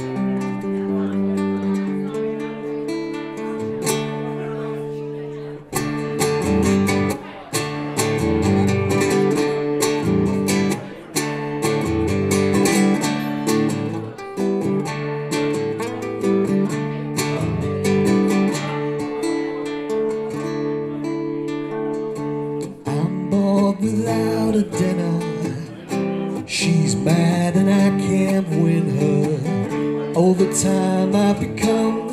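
Solo guitar playing the opening of a blues ditty, picked and strummed chords. The playing picks up and gets fuller about six seconds in.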